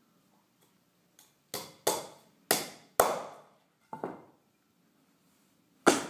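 Hammer driving a nail into a wooden board: a light tap, then four ringing blows about half a second apart, then two quick lighter taps. A single loud thump near the end as a shoe comes down on the board.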